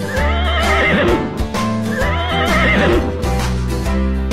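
Two horse whinnies, each about a second long with a wavering, shaking pitch, the second starting about two seconds in. They play over upbeat background music.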